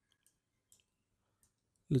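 A few faint computer mouse clicks, spaced apart, then a man's voice begins speaking just before the end.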